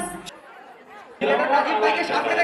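Dance music cuts off just after the start, leaving a second of faint chatter in a large hall; a little over a second in, loud voices come in.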